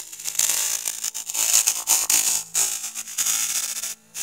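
Cartoon audio distorted almost beyond recognition by an extreme digital effect chain: a loud, harsh hiss that surges and dips in level, with faint steady tones underneath.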